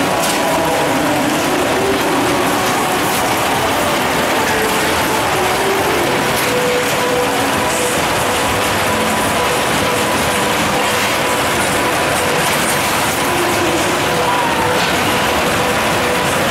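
Crazy Mouse spinning steel coaster running: a continuous mechanical clatter and ratcheting of the cars, lift chain and anti-rollback on the track.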